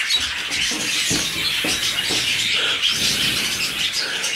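Many caged canaries and parrots chirping and twittering together in a bird room, a continuous busy chatter of high calls.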